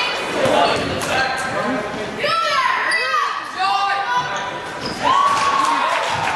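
Basketball game play in an echoing gymnasium: the ball bouncing on the hardwood floor, sneakers squeaking in short bursts, and players and spectators calling out.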